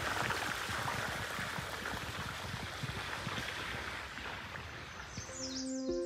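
Shallow creek running over rocks, a steady rush of water. Music comes in near the end.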